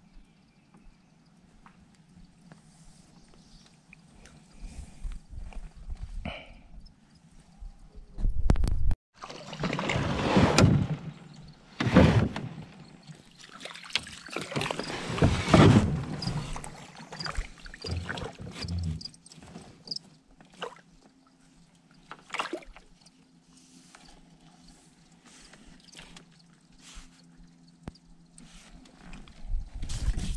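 Water sloshing and splashing around a kayak, in loud noisy rushes for about ten seconds in the middle, with scattered knocks and clicks; the quieter stretches before and after hold a faint low steady hum.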